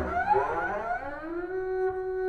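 Bowed double bass sliding upward in pitch for about a second and a half in a glissando, then holding a steady high note.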